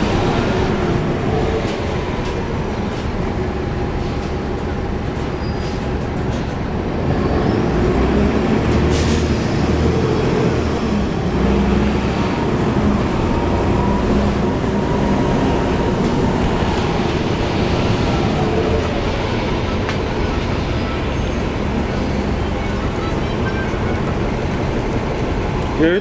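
Cummins ISL9 diesel engine of a NABI 40-foot transit bus heard from inside the passenger cabin, running under way and getting louder as it builds speed about eight seconds in, with a thin steady whine over it.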